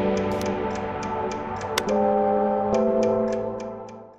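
Background music: held synth chords over a light ticking beat of about three ticks a second, the chord changing near the middle and the whole fading out at the end.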